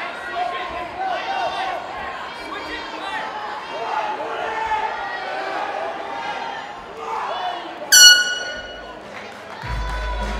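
Spectators and cornermen shouting through the closing seconds of the round. About eight seconds in, a loud horn sounds for about a second, signalling that time has expired.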